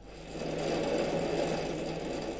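Multi-channel ink-pen chart recorder running, its pen drives making a steady mechanical chatter over a low hum. The sound fades in over the first half-second.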